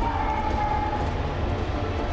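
Steady low rumbling drone with a faint held tone in the first second.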